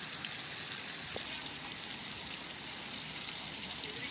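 Steady rush of a fast-flowing river.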